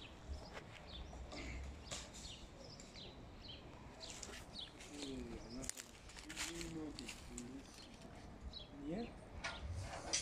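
Faint outdoor background of small birds chirping now and then, with faint voices talking in the distance a little past the middle.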